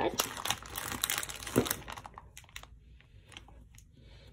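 A thin clear plastic zip-top bag crinkling as it is handled. The crackling is dense for about two seconds, then thins to a few faint crackles.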